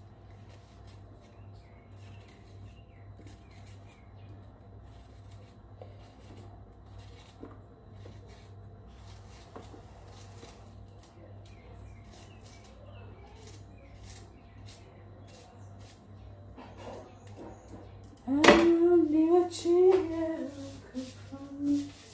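Faint small ticks and scrapes of a knife working on a green vegetable held in the hands. About eighteen seconds in, a woman's voice comes in suddenly and loudly with long, drawn-out notes and becomes the loudest sound.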